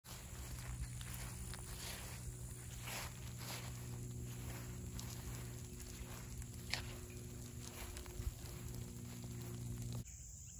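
Outdoor ambience with a steady low hum and scattered soft, irregular rustles and clicks, with a sharper click near the end.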